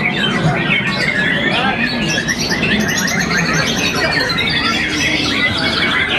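A dense chorus of caged competition songbirds singing at once, with a white-rumped shama (murai batu) among them. Overlapping whistles, chirps and trills run throughout, including a long descending trill in the middle. A low crowd murmur sits underneath.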